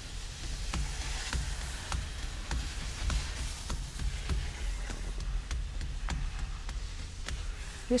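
Hands drumming a steady practice rhythm on the padded safety bar of a chairlift: light, evenly spaced taps, a few per second, over a steady low rumble.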